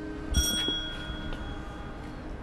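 A doorbell ringing once: a single struck bell note with several high overtones that rings out and fades over about a second.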